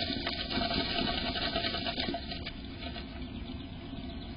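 A tree swallow shifting about inside a wooden nest box: dry grass nesting material rustling, with a few sharp scratches or taps, louder in the first half.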